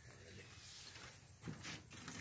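Near silence: faint outdoor background with a brief soft knock or rustle about one and a half seconds in.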